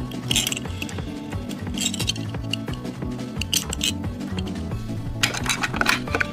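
Background music, with light metallic clinks of small die-cast toy cars being handled, heard a few times and most densely near the end.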